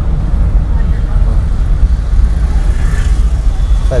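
Steady low rumble of engine and road noise inside a moving Toyota Corolla's cabin.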